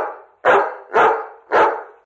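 A dog barking four times in quick succession, about two barks a second.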